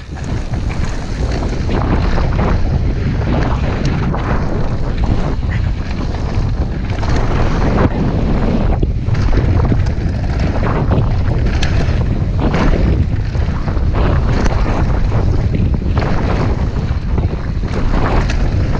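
Wind buffeting a rider-mounted camera's microphone and knobby mountain-bike tyres rumbling over a gravel dirt trail at speed, with frequent short knocks and rattles from the bike over bumps.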